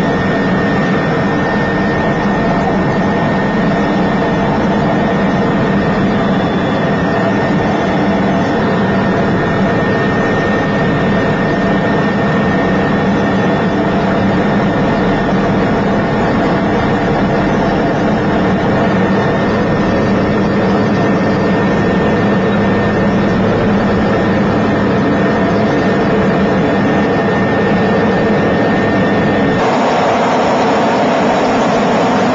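Steady engine and rotor drone heard from inside a helicopter cabin, with a thin high whine held steady over it. The sound changes abruptly just before the end, at a cut.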